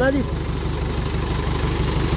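Mahindra 475 DI tractor's four-cylinder diesel engine running steadily at low revs, driving an irrigation pump through its PTO, with an even low firing pulse. Under it, water gushing from the pump's six-inch outlet pipe.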